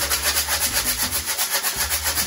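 Homemade maraca, a capped plastic water bottle partly filled with rice, garbanzo and pinto beans, lentils, pebbles and a few seeds, shaken in a quick, even rhythm of about six or seven strokes a second, the dry fill rattling against the plastic.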